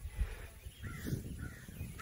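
Faint bird calls about a second in, over a low rumble of wind on the microphone.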